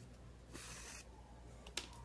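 Faint, brief hiss of sewing thread drawn through grosgrain ribbon as a hand-sewn bow is gathered, followed by a couple of faint light clicks near the end.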